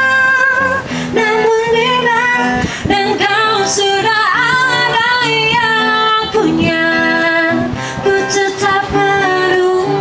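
A woman singing with vibrato while accompanying herself on an acoustic guitar, plucked chords and bass notes under her held, wavering sung notes.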